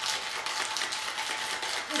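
Ice rattling hard inside a metal cocktail shaker being shaken vigorously, a continuous fast clatter.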